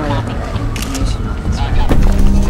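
Film soundtrack mix: a low pulsing musical score under indistinct voices, with a few sharp clicks about a second in that fit footsteps on a concrete floor.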